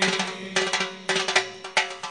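A quick, uneven run of hand-percussion hits in a break between chanted nasheed phrases, over a faint held tone.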